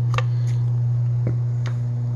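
A steady low hum with a few faint light ticks over it.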